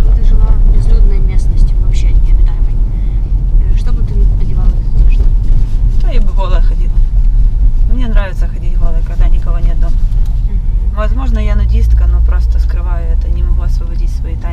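Steady low road and engine rumble inside a moving Toyota car's cabin, with a woman's voice talking over it from about six seconds in.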